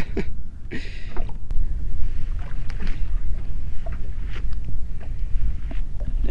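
Steady low wind rumble on the microphone with water moving against the hull of a small drifting boat, and a short hiss about a second in.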